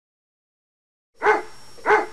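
A dog barking twice, two short barks about half a second apart, after a second of silence.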